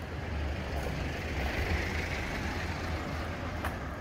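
A pickup truck driving slowly past: a low engine hum and tyre noise on the paving stones that swell through the middle and ease off toward the end.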